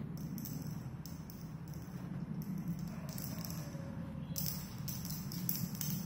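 Irregular light clicks and rustles of hands working a rubber band around a glass test tube, over a steady low hum in the room.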